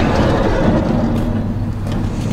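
Van engine idling with a steady low hum, heard from inside the van with its sliding side door open.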